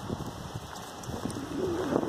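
Footsteps rustling over grass, then about one and a half seconds in a low, drawn-out tone starts that wavers and slowly slides down in pitch.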